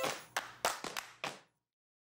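The tail of the closing background music: the chords stop and a handful of sharp, clap-like percussion hits ring out and fade. The track then cuts to dead silence about one and a half seconds in.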